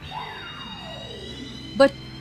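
Anime soundtrack sound effect: a long falling whistle-like glide over about a second and a half, with faint high tones rising above it and soft background music.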